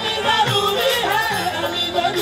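Qawwali music: a male voice sings a long ornamented line, its pitch gliding up and down, over steady held accompaniment.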